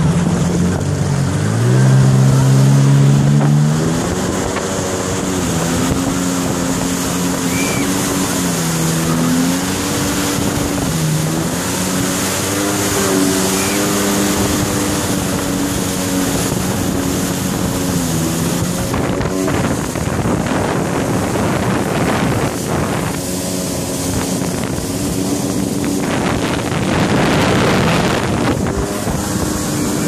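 Motorboat engine towing at speed: its pitch climbs over the first few seconds as it accelerates, then rises and dips with the throttle, over the steady rush of the boat's wake.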